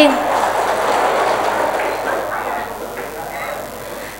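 Audience applauding, the clapping gradually dying away.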